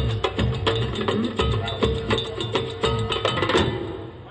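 Live Spanish folk band with fiddle, electric bass, hand percussion and drum kit playing a driving percussive groove. The band stops together on a final hit about three and a half seconds in, ending the song.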